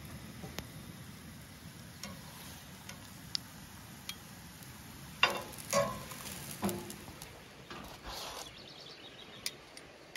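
Burritos sizzling softly on a cast-iron griddle over a camp stove, with light clicks and, about five to seven seconds in, a few louder clinks of metal tongs against the pan that ring briefly.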